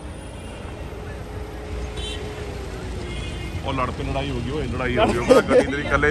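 Low, steady rumble of a traffic jam of cars, with men's voices talking over it from about four seconds in.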